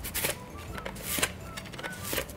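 Korean radish (mu) pushed down a mandoline slicer, with two slicing strokes about a second apart. Each is a short scrape of the blade cutting off a round slice.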